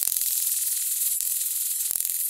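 Steady high-pitched hiss of an old film soundtrack running over blank black leader, with a couple of faint clicks.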